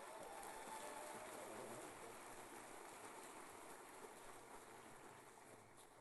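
Near silence, with faint audience applause fading out over the first two seconds.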